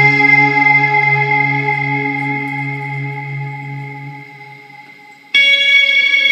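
Guitar chord ringing out with echo and slowly fading, then a new chord struck sharply about five seconds in.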